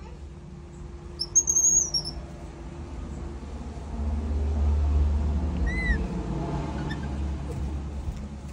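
Two short high-pitched animal calls: a thin squeaky whistle about a second and a half in, the loudest sound, and a brief rising-and-falling chirp near six seconds. A low rumble swells in between.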